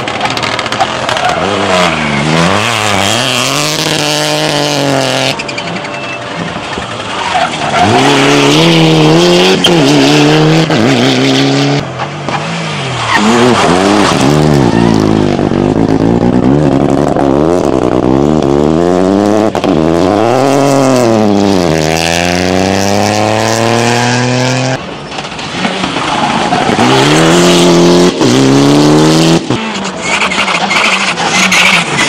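Rally cars passing at speed one after another, engines revving hard, the pitch climbing and dropping repeatedly with gear changes and lifts. The sound jumps abruptly between passes about 5, 12 and 25 seconds in.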